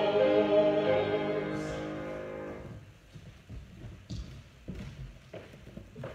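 A group of voices singing a hymn, ending on a long held final chord that fades out a little under three seconds in. It is followed by a quieter stretch with a few scattered soft knocks and shuffles.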